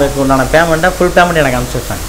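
A man speaking, over a steady hiss.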